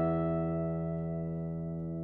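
Koentopp Chicagoan archtop acoustic guitar: a chord left ringing and slowly fading away, with no new notes struck.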